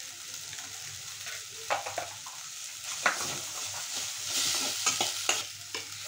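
Diced potatoes and carrots sizzling in oil in a stainless steel kadai, stirred with a steel spoon that scrapes and clicks against the pan a few times. The sizzle swells for about a second roughly four seconds in.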